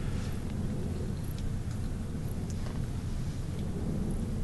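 Steady low room rumble with a few faint, light scratches and ticks of a kneaded eraser working pastel chalk on paper.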